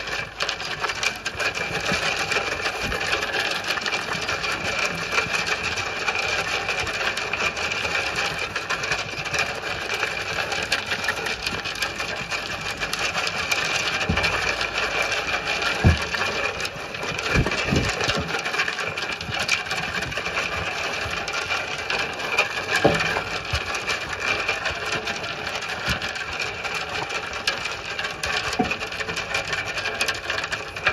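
A flock of Zwartbles sheep eating feed from a metal trough: a steady, dense crunching and clicking of many mouths chewing and muzzles working through the feed on the metal. A single louder knock comes about halfway through.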